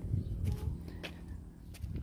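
A few faint footsteps on concrete over a low steady outdoor rumble.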